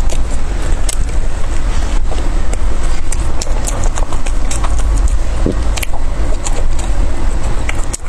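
Close-miked chewing and mouth sounds from eating soft steamed buns, with many short wet clicks. Under them runs a steady, loud low rumble.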